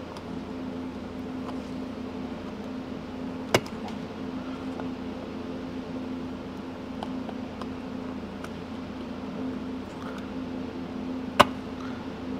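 Pliers crimping the chrome bezel rim of a tachometer housing, with a few light metal ticks and two sharp clicks, one about a third of the way in and one near the end, over a steady background hum.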